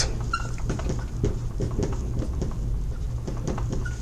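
Dry-erase marker writing on a whiteboard: faint scratchy strokes with a few short high squeaks.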